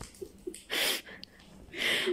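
Two short, breathy hisses about a second apart, like a person's sharp breaths or a gasp, with a quiet lull between them.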